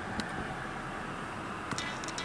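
Steady background hiss inside a car cabin, with no distinct events.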